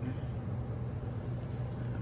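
Faint handling of a sheet of paper on a cutting mat as a fold is undone and smoothed, over a steady low background hum.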